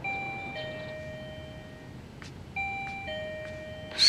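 Electronic doorbell chime ringing a two-note ding-dong, a higher note falling to a lower one, twice, the second about two and a half seconds after the first.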